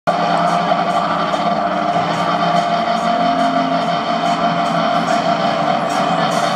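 A live rock band's amplified sustained chord through outdoor PA speakers: a steady drone of several held tones, with faint light ticks over it.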